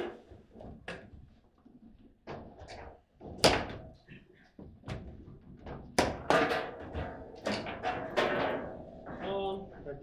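Foosball play: the ball cracking off rod-mounted players and knocking against the table walls, with rods slamming in their bumpers. Scattered sharp hits give way to a rapid flurry of knocks in the second half.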